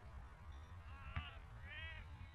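Outdoor soccer game sound with wind rumbling on the microphone, a sharp knock of a ball being kicked about a second in, and two short high-pitched shouts from players or spectators, the second near the end.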